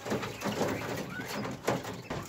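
Texas quail, a white meat breed of Japanese quail, calling in a cage, mixed with rustling and scuffling of the birds on the wire floor. A louder knock comes near the end.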